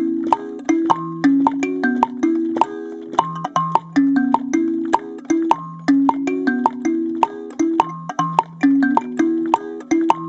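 Twelve-tine metal-tined kalimba (sanza) plucked with both thumbs in a steady repeating rhythmic figure on the 6/8 Afro-Cuban clave, the notes ringing over one another. A foot-played woodblock clicks the beat under it.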